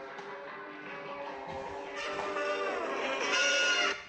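A mobile phone ringtone playing a guitar tune, growing steadily louder and cut off suddenly near the end.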